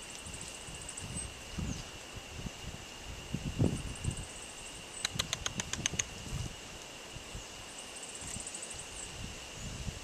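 Outdoor ambience of a steady, high insect drone with fast, faint high trills coming and going. About five seconds in there is a quick run of about ten sharp clicks. Low rumbles come and go, the loudest a little before that.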